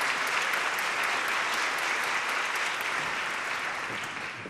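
Concert hall audience applauding, the applause starting to die away near the end.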